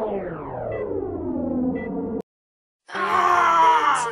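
A falling pitch sweep, several tones gliding down together, cuts off abruptly about two seconds in. After a brief silence a man lets out a long, loud, anguished scream.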